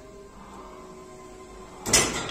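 Gym cable machine: a single loud clank near the end as the weight stack drops back down when the cable bar is let go at the end of the set.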